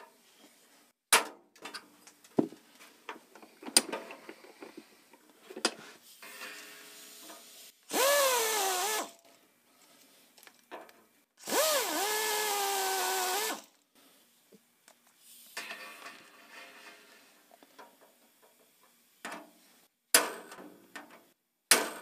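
Air drill run in two short bursts, each a second or two long, drilling out the head of an Avex blind rivet in aluminium sheet; its whine rises as it spins up and drops as it bites into the rivet. Sharp metal clicks and taps come before and after the bursts.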